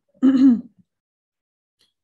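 A single short vocal sound from a woman, about half a second long just after the start. It is followed by silence.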